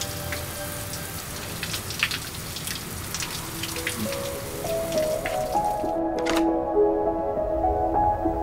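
Shower running: a steady hiss of falling water with scattered drips, which cuts off suddenly about six seconds in. Soft sustained music notes come in about halfway through and carry on after the water stops.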